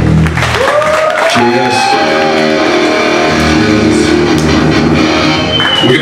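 Live punk band finishing a song: the drums stop about a second in and distorted electric guitar rings on and is played loosely. A short high whine comes near the end.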